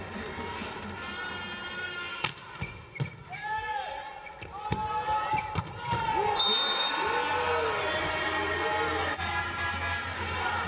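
Volleyball being played in an indoor arena: several sharp ball hits, the clearest about two seconds in, over crowd voices and cheering.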